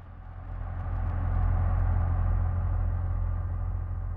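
A deep, steady low rumble that swells in over the first second or so and then slowly fades, under an end-title logo card.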